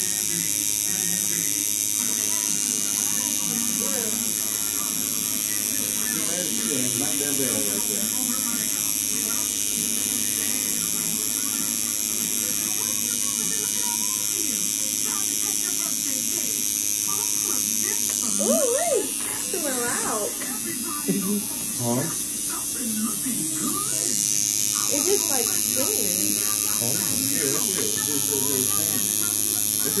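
Electric tattoo machine buzzing steadily as the needle works lettering into the skin of a forearm. It drops away for a few seconds about two-thirds of the way through, then starts again.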